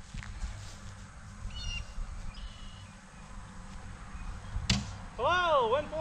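A single sharp knock about three-quarters of the way through, typical of a cornhole bean bag landing on a plywood board, followed by a short wavering 'ooh' from a person's voice near the end. Faint chirps in the quiet background early on.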